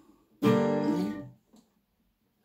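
Acoustic guitar with a capo: one chord strummed about half a second in, ringing for under a second before it dies away.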